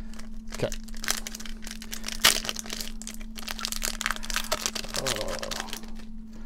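Foil Pokémon booster pack wrapper crinkling as it is handled and torn open, with irregular crackles and one sharp tear about two seconds in.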